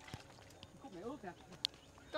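Faint voices of onlookers talking, with a few small clicks, in a quiet moment outdoors.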